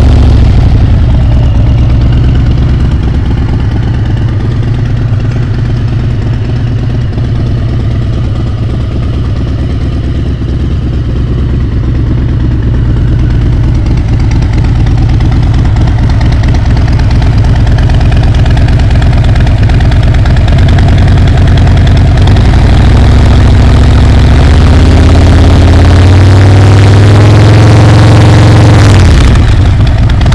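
2018 Harley-Davidson Breakout's Milwaukee-Eight 114 V-twin running through an aftermarket Vance & Hines exhaust. It idles steadily for most of the time, then the engine speed climbs slowly over several seconds and drops back just before the end.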